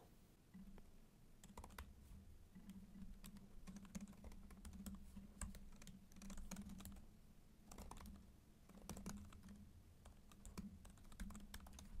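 Faint typing on a computer keyboard: irregular key clicks in quick runs with short pauses, as lines of code are entered.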